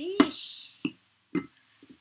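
A fork clinking and scraping against a ceramic plate as instant noodles are stirred: four sharp clicks, irregularly spaced, with a short vocal sound near the start.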